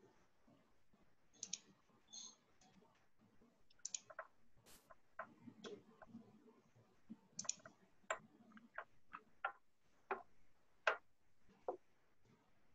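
Irregular sharp clicks, about a dozen, scattered unevenly over a faint, quiet background.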